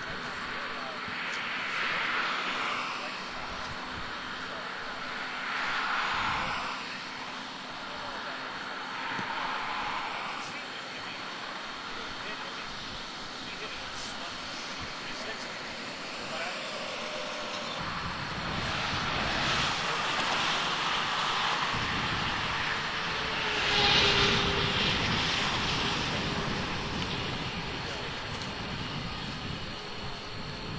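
Road traffic passing on the highway: vehicles swell and fade by every few seconds, then a heavier, deeper rumble builds in the second half and peaks about three-quarters of the way through before easing off.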